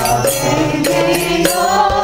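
Group devotional singing of a Bengali bhajan, voices over a sustained harmonium, with small hand cymbals struck in a steady rhythm.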